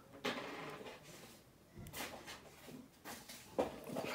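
Quiet close-up handling noises: a few short, soft rustles and scrapes from fingers working a toothpick and a small miniature part on a tabletop, with near silence between them.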